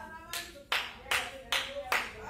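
Hand-clapping in a steady rhythm, about two and a half claps a second, starting a moment in, over a faint held note.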